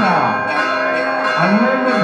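Church bells ringing continuously in a festive peal, with a voice heard faintly over them.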